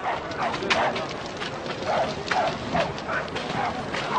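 A dog barking repeatedly, short barks about twice a second.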